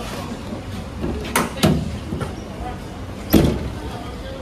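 Tailgate of a Ford Ranger pickup being unlatched and lowered: two metal clunks a little over a second in, then a louder clank a little past three seconds.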